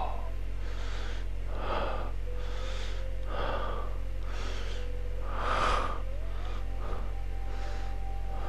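A man's heavy, laboured breathing and gasps, about one breath a second: the pained breathing of a wounded man.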